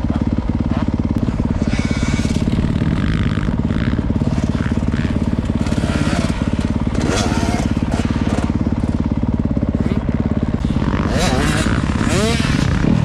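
Motocross bike engine idling close up with a fast, steady putter, while other dirt bikes rev on the track, one rising in pitch near the end.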